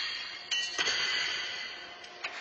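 Pitched steel horseshoes clanging against the court stakes in a large arena. A ringing clang carries over from just before the start, a second clang strikes about half a second in, and each rings on and fades in the hall's echo.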